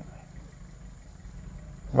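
Faint, steady low rumble of a vehicle engine idling.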